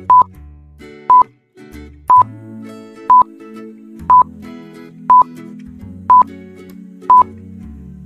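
Quiz countdown timer beeping once a second, eight short high beeps at the same pitch, over soft background music.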